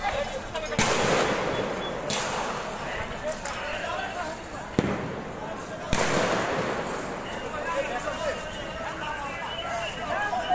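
Four sharp bangs, about 1, 2, 5 and 6 seconds in, each trailing an echo, over continuous shouting crowd voices: tear gas shells being fired by police.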